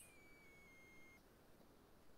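Near silence on an online call, with only a very faint high tone in the first second.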